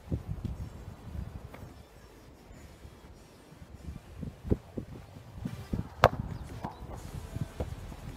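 Uneven low rumbling of wind on the microphone, with scattered small knocks and one sharp click about six seconds in.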